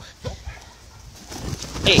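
Low animal calls from a dog and a peacock at close quarters, then a sudden scuffle and a jolt of the phone near the end as the leashed dog lunges at the bird.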